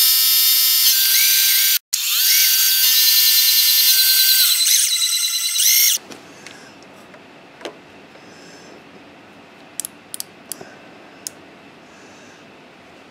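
Milling machine end mill cutting the side of a metal block: a loud, high-pitched whine made of several steady tones with rising and falling sweeps, briefly dropping out near two seconds in and cutting off sharply at about six seconds. After that a few light clicks sound as a micrometer is set against the block.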